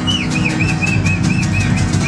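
Acoustic band playing: strummed strings over a fast, steady percussion beat, with a short high note figure repeated about four times a second.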